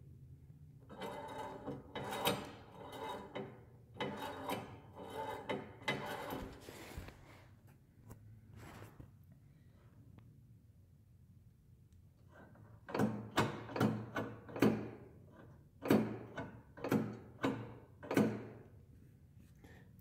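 Go-kart pedal linkage being worked: steel pushrods, rod ends and coil return springs rubbing and clattering, then a run of sharp metal clacks about two a second near the end as the pedal is pressed and let go again and again.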